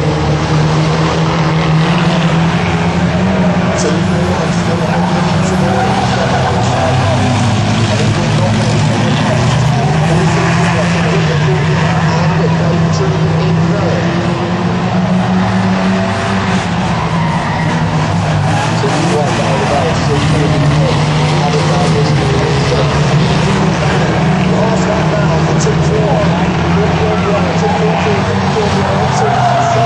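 Several van engines running hard together as a pack of vans races round a short oval track, a loud continuous mix of engine noise with no break.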